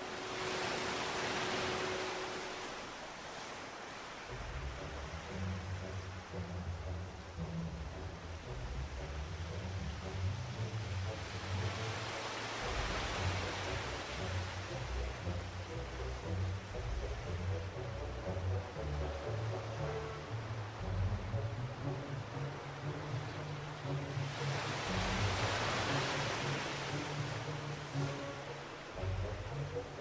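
Sea waves washing onto a beach, swelling and fading three times about twelve seconds apart, with background music carrying a low bass line from about four seconds in.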